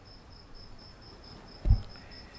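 Cricket chirping steadily, a high-pitched pulse about five times a second, with a brief low thump near the end.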